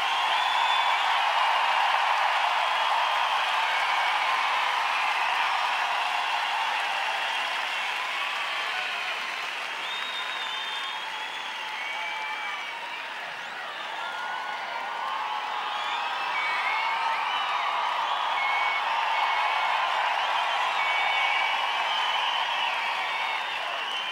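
A very large concert crowd applauding and cheering, with scattered high shouts over dense clapping. The ovation eases a little about halfway through, then swells again.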